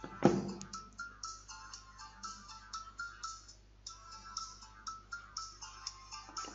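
A phone's electronic ringtone playing a tune of short notes as an incoming test call rings through. A sharp click sounds just after the start.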